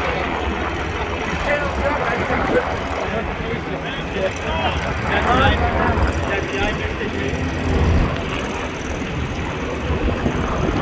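A motorboat's engine running with a steady low rumble as the boat passes close by, with indistinct voices talking in the background.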